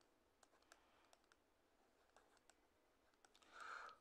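Near silence with faint, scattered clicks from a pen input writing on a digital whiteboard, and a brief faint sound just before the end.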